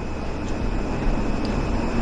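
Steady background noise, an even hiss with a low rumble underneath.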